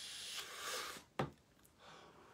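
A man breathing out hard for about a second, then a single sharp click.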